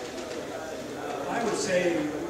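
Speech: a voice talking in a hall, starting about a second in.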